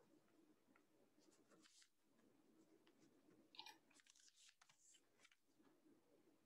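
Near silence: faint room tone with a few faint, scattered clicks and rustles.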